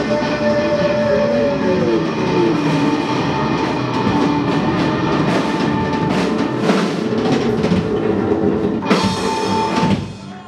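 Live rock band (electric guitar, bass guitar and drum kit) playing the closing bars of a song: a held guitar note slides down in pitch about a second in while the drums and cymbals keep crashing, with a big final hit near the end.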